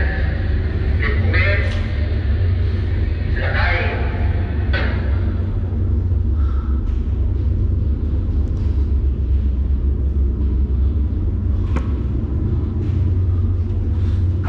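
Steady low machinery rumble heard inside a steel ballast tank, with a few brief voice-like sounds in the first five seconds and a sharp click about twelve seconds in.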